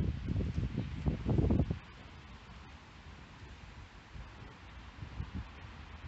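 Wind buffeting the microphone in irregular low rumbles for the first couple of seconds, then easing to a faint steady outdoor hiss with a few light bumps.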